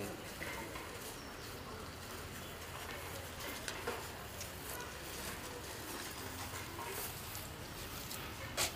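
Steady outdoor background noise with no clear foreground source, broken by two faint light clicks a little under four seconds in.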